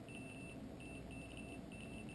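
Safecast Onyx Geiger counter's count indicator beeping faintly: short high-pitched pips at irregular intervals, several a second. Each pip marks one detected radiation count, here from a tritium vial held up to the detector, with the count rate rising.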